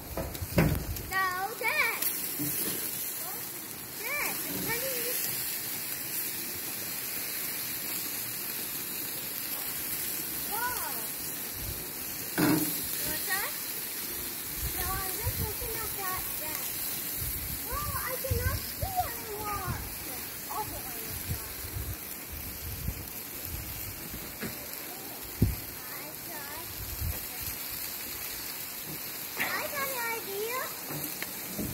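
Children's voices calling and shouting at a distance, in short scattered calls over a steady hiss, with irregular low rumbles of wind buffeting the microphone.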